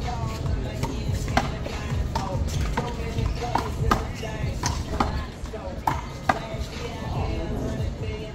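One-wall handball rally: sharp, irregular slaps of the ball off players' hands, the wall and the concrete court, about ten in all, with music and voices underneath.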